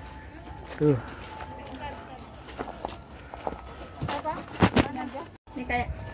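Footsteps on a paved outdoor path with open-air ambience and brief snatches of voices. The sound drops out briefly near the end.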